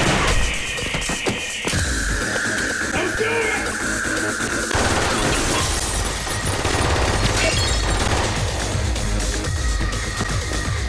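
Music with a gun battle under it: a sudden burst of gunshots right at the start, then repeated shots mixed with glass shattering.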